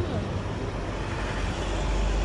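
City street traffic: a steady hum of car and bus engines, with a low rumble that swells near the end.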